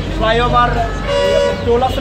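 A vehicle horn sounds once, a steady held note of nearly a second starting about a second in, over a constant low rumble of street traffic.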